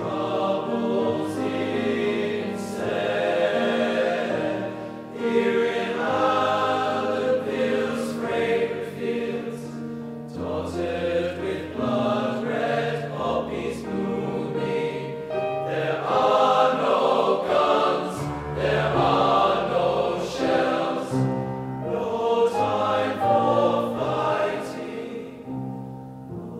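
Male voice choir singing in four-part TTBB harmony, sustained and swelling to its loudest about two-thirds of the way through, then falling away near the end.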